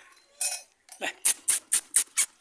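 A quick, regular series of sharp clicks, about four a second, starting about a second in, preceded by a short faint sound.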